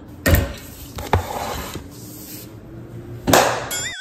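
Two sharp knocks about a second apart with clatter after them, then a louder whoosh and a warbling comic sound effect near the end.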